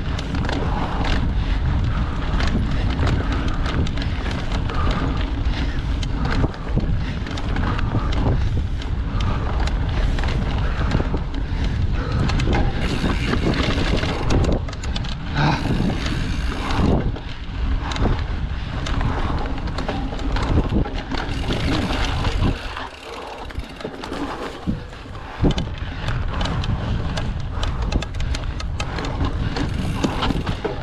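Mountain bike ridden along a dirt forest trail: a steady rush of wind buffeting the camera microphone over the tyres on dirt, with frequent small rattles and clicks from the bike over bumps. The noise drops for a moment about three quarters of the way through.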